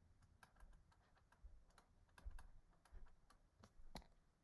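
Faint, irregular clicks and taps of a stylus on a drawing tablet as numbers and brackets are handwritten.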